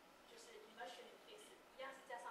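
Speech only: a lecturer's voice talking quietly, with short pauses.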